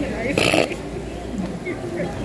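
A person's short, harsh vocal burst about half a second in, over faint background voices.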